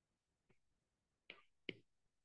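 Near silence with a few faint, short taps of a stylus on a tablet's glass screen during handwriting, two of them a little clearer about a second and a half in.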